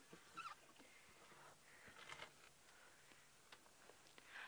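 Near silence, with a few faint, brief high-pitched sounds about half a second in and again about two seconds in, and a faint click near the end.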